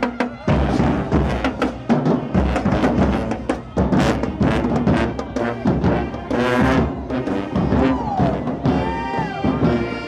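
Marching band playing while passing by: bass and snare drums beating out a driving rhythm under brass from sousaphones and saxophones. The sustained horn notes come through more clearly near the end.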